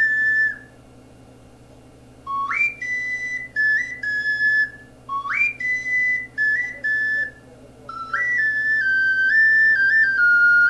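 Focalink plastic soprano C ocarina playing a high, clear melody in its upper range. A note stops just after the start, and after a pause of nearly two seconds come phrases of short stepped notes, two of them swooping up into their first note, then a longer legato run from about eight seconds in.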